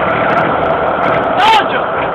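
IMT tractor diesel engine running steadily, with a person's voice calling out briefly about one and a half seconds in.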